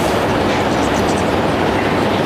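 Steady, loud rumbling noise that holds an even level, with no voice over it.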